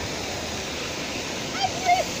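Steady rushing hiss of water from a waterpark's splash pool and spray play features. A child's voice calls out near the end.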